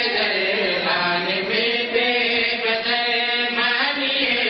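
Men's voices chanting a majlis mourning recitation into a microphone, in long held melodic lines that carry on without a break.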